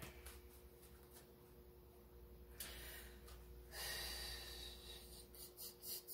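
Faint soft rustling as a tarot deck is shuffled by hand, in two stretches of hiss-like sliding near the middle, with a few light card clicks near the end, over a low steady electrical hum.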